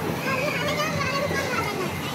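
Overlapping voices of children and other people chattering and calling, with no single clear speaker.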